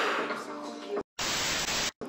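A hip-hop track plays for about a second, then cuts to silence, and a short burst of steady hiss-like static starts and stops abruptly.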